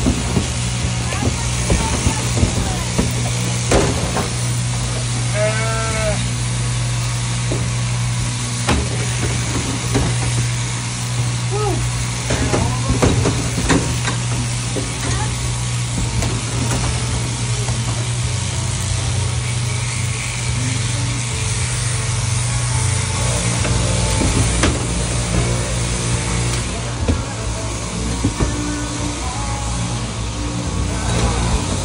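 Overhead-drive sheep shearing handpiece running steadily, with a low hum throughout and light clicks as it works through a ram's fleece. A sheep bleats about five and a half seconds in, with a few shorter calls a little later.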